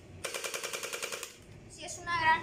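Electric gel blaster (hydrogel toy gun) firing a full-auto burst with its silencer fitted. Its motor and gearbox cycle in a fast, even rattle that lasts a little over a second and stops sharply.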